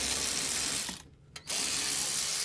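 Cordless electric ratchet spinning out a 17 mm caliper bracket bolt on a rear disc brake. It runs steadily, stops about a second in, and starts again half a second later.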